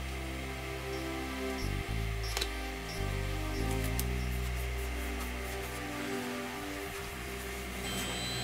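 Background music carried by sustained low bass notes that change pitch every second or so, with two faint clicks about two and a half and four seconds in.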